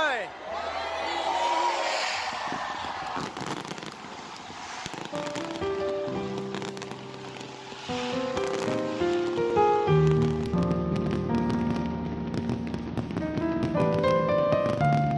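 Fireworks crackling and bursting over the first few seconds, then background music: a melody comes in about five seconds in and a low beat joins about ten seconds in, with the fireworks' crackle still faintly under it.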